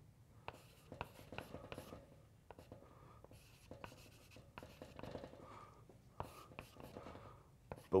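Chalk writing on a blackboard: irregular taps and short scratching strokes as symbols are chalked in.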